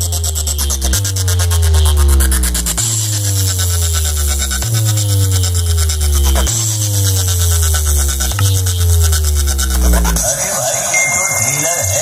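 Electronic dance music played loud through a large stacked DJ speaker rig (a competition 'box'), with deep bass notes that change about every two seconds under repeating falling sweeps and a fast high beat. About ten seconds in, the bass drops out.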